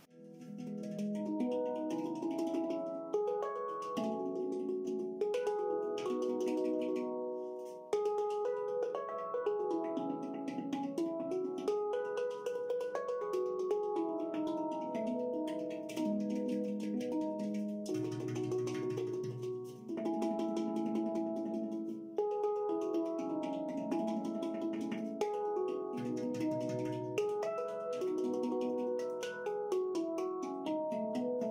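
Handpan played in fast single-stroke rolls, the hands alternating quickly enough that the strikes blend into sustained ringing chords. The chord changes about every two seconds, with deeper bass notes coming in now and then.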